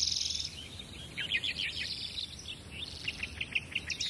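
Small birds chirping: a fast, high trill at the start, then strings of short, quick chirps through the rest.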